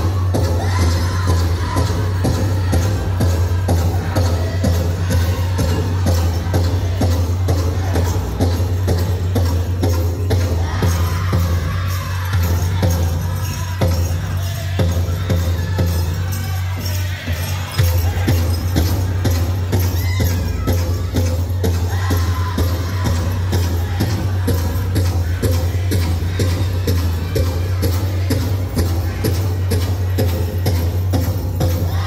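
Powwow drum group: a large shared drum struck in a steady beat while the men around it sing a contest song together.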